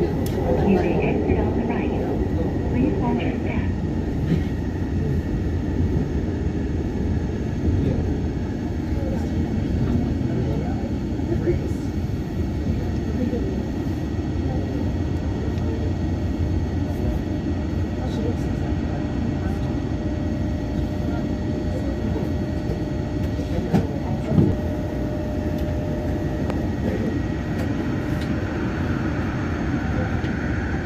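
Yongin EverLine light-metro train running steadily on its elevated track and into a station, a continuous low rumble throughout. A faint steady tone sounds through the middle of the stretch, and two short sharp knocks come about three-quarters of the way through.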